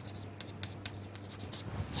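Chalk writing on a chalkboard: faint, irregular scratches and taps over a low steady hum.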